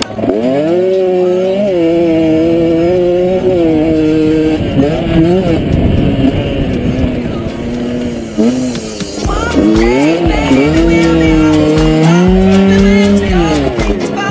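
HM CRE 50's 50 cc two-stroke engine revving hard under the rider, pitch climbing and holding in steps as it changes gear, dipping about two-thirds of the way in, then climbing again and falling off near the end.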